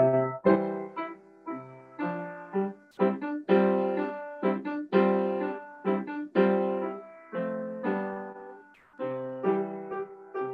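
Upright piano played by a student: struck chords over low bass notes, each ringing and dying away before the next, in short phrases with brief pauses between them.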